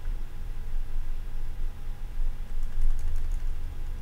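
Steady low hum and rumble of an open microphone, with a few faint computer keyboard clicks about two and a half to three seconds in as the video is stepped through frame by frame.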